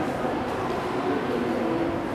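Steady room noise in a large hall with faint, indistinct voices in the background.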